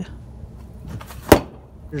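One sharp smack of a wooden nunchaku stick striking a wrapped freestanding punching bag in a power shot, a little over a second in.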